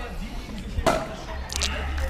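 Runner gulping water from a paper cup on the move: a sharp click just before one second in and a short slurp about a second and a half in, over a steady low rumble.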